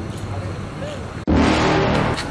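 Steady road traffic hum, cut into about a second and a quarter in by a sudden louder, noisy sound lasting about half a second.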